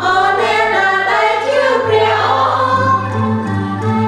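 A small mixed choir of men's and women's voices singing a hymn in Khmer, several voices together in a slow, continuous line.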